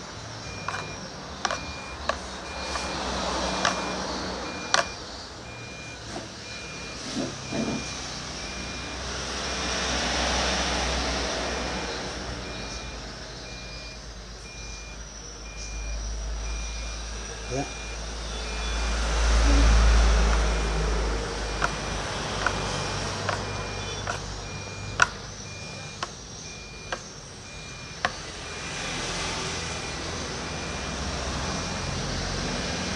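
Road traffic passing several times, each vehicle swelling and fading, the loudest with a deep rumble about twenty seconds in. A steady pulsing high beep runs through the first half. Sharp clicks of a metal spoon against plastic trays come as fish pieces are worked in flour.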